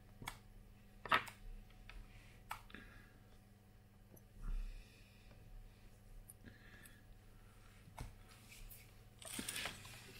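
Faint scattered clicks and taps of a soldering iron's tip against a tin of rosin and cardboard while the new tip is being tinned with solder, over a low steady hum. A brief hiss comes near the end.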